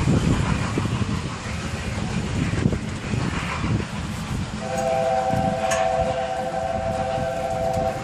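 Steam locomotive, the A4 Pacific Bittern, rumbling, then about four and a half seconds in its three-note chime whistle sounds, held steady for about three seconds and cut off near the end.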